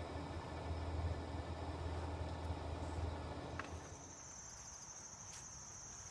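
A steady low hum in a small room for the first few seconds, then, from about four seconds in, a steady high-pitched chorus of crickets.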